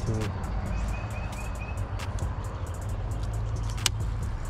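Outdoor ambience: a steady low rumble, with a bird chirping a quick run of about five short high notes about a second in, and a single sharp click just before the end.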